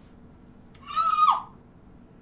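A woman's short, high-pitched shriek, held for about half a second before dropping sharply in pitch, in startled reaction.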